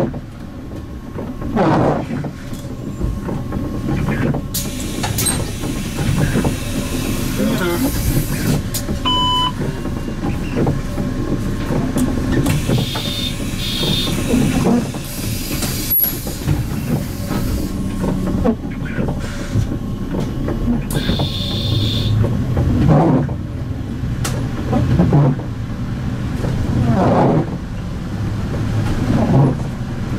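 MAN Lion's City CNG city bus idling on its natural-gas engine at a stop, then pulling away, its engine rising and falling in pitch through the gear changes. A short electronic beep sounds about nine seconds in.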